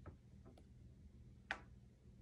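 Near silence: room tone with a few faint, short clicks, the sharpest one about one and a half seconds in.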